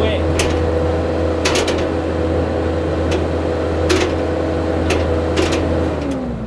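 Compact track loader running at high revs with a steady hydraulic whine as its root grapple is cycled open and shut quickly, giving about six sharp metal clanks as the grapple hits its stops. The fast cycling is what the owner credits to the machine's stronger hydraulic flow.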